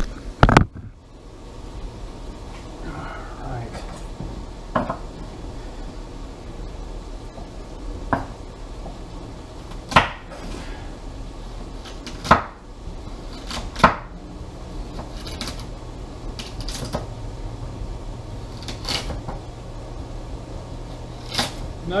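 Kitchen knife slicing carrots on a wooden cutting board: sharp, single knocks of the blade reaching the board, spaced unevenly a second or a few seconds apart, over a low steady hum.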